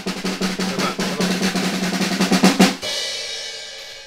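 Snare drum roll on a drum kit, building for about two and a half seconds and ending on a final hit that rings out and fades away.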